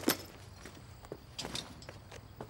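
Quiet, with a light click just after the start and a few faint clicks and steps about one and a half seconds in, as someone moves at an old car's open door.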